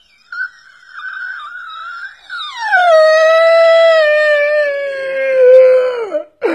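A long, loud howling wail: a wavering high whine for about two seconds, then a sliding drop into a held note that slowly sinks in pitch until it cuts off at the end.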